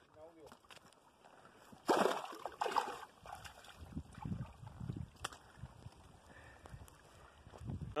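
Shallow creek water splashing and sloshing about two seconds in, as a small largemouth bass is let go, followed by low, uneven bumping sounds.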